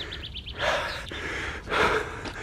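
A small bird trilling, a quick run of short high falling chirps that stops about half a second in, followed by two short breathy rushes of noise, one near the middle and a louder one near the end.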